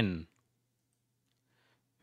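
A narrator's voice finishes the spoken letter "N" at the very start, then near silence with only a faint low hum.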